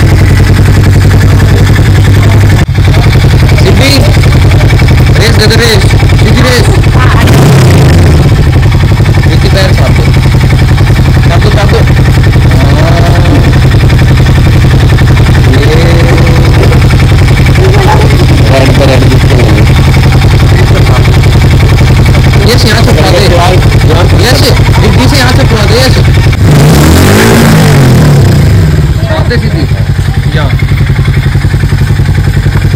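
Harley-Davidson X440's single-cylinder engine running steadily, revved up and back down about seven seconds in and again near the end, with people talking over it.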